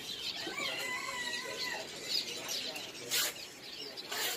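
A chorus of caged birds chirping and whistling over one another, with one drawn-out call about a second in and a short, loud rustling burst a little after three seconds in.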